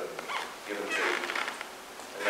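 A person speaking in short phrases, with a brief scratchy texture about a second in.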